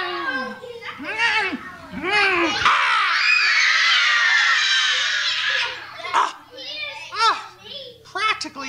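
Young children shouting and squealing all at once for about three seconds in the middle, with single voices calling out before and after.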